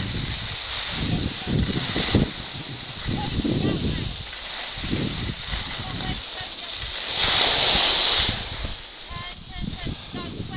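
Skis sliding and scraping over packed snow, with wind buffeting the microphone. About seven seconds in there is a louder scraping hiss lasting about a second, the skis skidding or carving hard.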